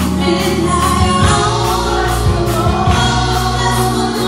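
Live gospel worship song: a woman leads the singing into a microphone, with backing singers and a band behind her and a steady bass line underneath.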